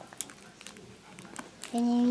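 Faint crinkles and light clicks of a small plastic packet being handled in a child's hands, then near the end a voice holding one steady hummed note.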